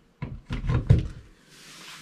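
A power cord's plug being pushed into a wall outlet: a cluster of clicks and knocks over about a second, the strongest near the end of it.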